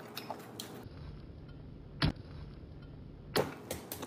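Low room tone with a single sharp click about halfway through and a few soft knocks near the end.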